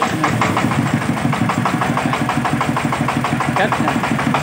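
Changfa 40 hp single-cylinder diesel engine starting and running at an even idle, about seven firing beats a second.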